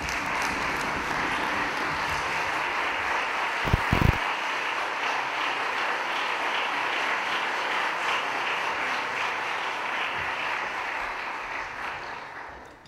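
Concert-hall audience applauding steadily, dying away near the end, with a couple of low thumps about four seconds in.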